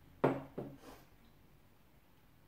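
Three quick knocks of a wooden spoon against a glass mixing bowl while stirring runny batter, the first the loudest and each fading quickly.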